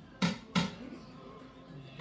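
Two quick knocks about a third of a second apart: a measuring scoop tapped against the mixing bowl as a scoop of all-purpose flour goes in. Faint music plays underneath.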